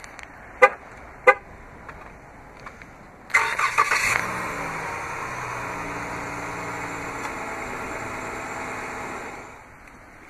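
Two short chirps, then the 2013 Chrysler 200 S's 3.6-litre Pentastar V6 cranks and fires on remote start about three seconds in. It flares briefly, then settles into a steady idle.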